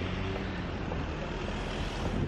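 Steady city street traffic noise, with a vehicle engine's low hum near the start and the hiss growing brighter toward the end.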